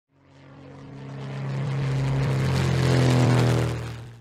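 Propeller airplane engine drone, one steady hum that swells up from silence, is loudest about three seconds in, then fades out quickly.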